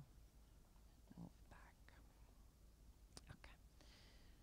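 Near silence: room tone with a faint murmured word or two about a second in and a few soft clicks a little after three seconds.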